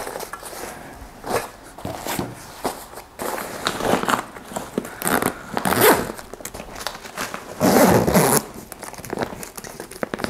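A fabric backpack being packed and closed: nylon rustling and handling of the bag's contents, then its zipper drawn in several short pulls around the clamshell opening.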